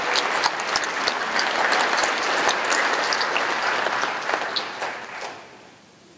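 Audience applauding, dying away about five seconds in.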